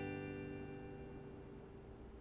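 Final strummed acoustic guitar chord ringing out and fading away as the song ends.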